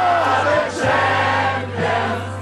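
A group of people singing together over music with a steady low bass note, the singing coming in phrases with short breaks.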